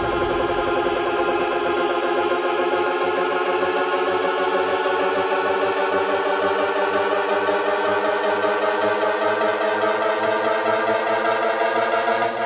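Breakdown of an electronic dance track in a DJ mix: sustained synthesizer chords with a slowly rising tone, and the bass drum and bass dropped out.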